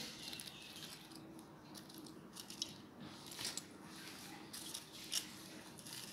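Faint handling sounds as fried pakoras are picked up and set down on a serving plate: a few soft taps and rustles, the clearest a light tap about five seconds in.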